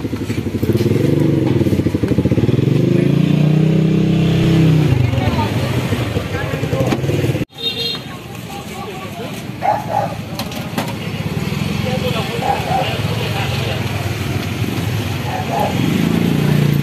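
Motorcycle engine revving up and back down close by over street noise and background voices. The sound drops out briefly about halfway through, then traffic noise carries on and another engine rises near the end.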